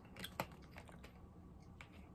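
A few light clicks and taps of small objects being handled on a desk, the sharpest about half a second in.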